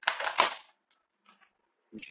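A brief burst of crinkling, clicking handling noise in the first half-second, with a faint click a little over a second in. The noise comes from a small plastic water bottle being handled.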